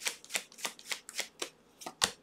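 A deck of tarot cards being shuffled by hand, with short, regular slaps of the cards about three to four times a second. The slaps pause briefly and end with a louder tap.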